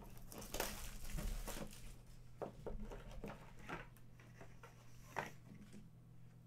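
Plastic shrink-wrap crinkling and tearing as a sealed box is opened, thickest in the first two seconds, followed by scattered small clicks and taps of handling the contents, with one sharper click about five seconds in.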